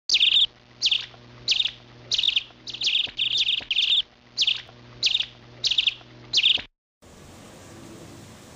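A bird calling: about a dozen short, sharp chirps in a row, one or two a second, over a faint steady low hum. The calls cut off suddenly near the end.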